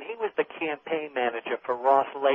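Speech only: continuous talk-radio conversation.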